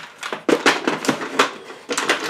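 Small plastic makeup products clicking and clattering against each other as they are put away into a drawer, about half a dozen quick knocks.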